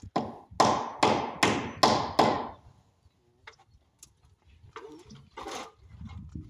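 Hammer blows on a wooden window frame: six sharp strikes in quick succession, about two and a half a second, then a few lighter knocks and taps.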